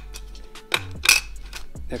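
Metal-and-plastic wheel centre caps clinking as they are set down and shifted on a board, with two sharp clinks about a second in, over background music with a steady bass line.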